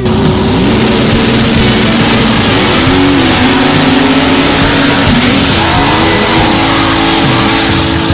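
Dirt drag racing car's engine at full throttle, loud, its pitch rising and falling as it runs down the track.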